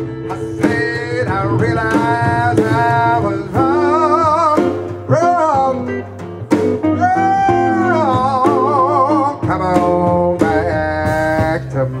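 Live jazz trio: a male jazz singer holds long, wavering notes over an eight-string guitar, which carries both the bass line and the chords, and drums.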